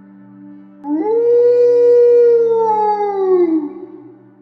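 A single long canine howl that swoops up at the start, holds steady, and falls away near the end, over a steady ambient music drone.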